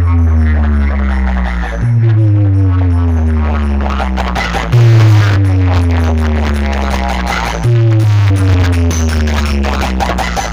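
Loud DJ electronic dance music on a big sound system. A heavy bass note slides downward in pitch and restarts about every three seconds, louder at each restart, over busy, fast beats.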